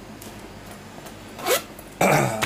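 A zipper on a leather winter boot pulled once, quickly, about one and a half seconds in: a short rasp that rises in pitch.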